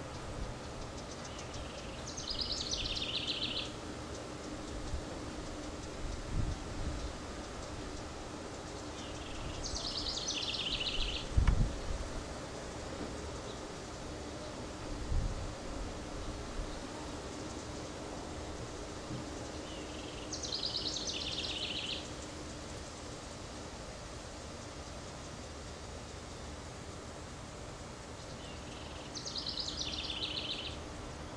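A songbird sings the same short song four times, several seconds apart: a brief lower note followed by a quick trill. Under it runs a steady low hum, and a few low thumps come through, the loudest about halfway.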